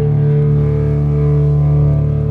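Live rock band's amplified electric guitar and bass holding one loud, steady chord that rings on without a beat.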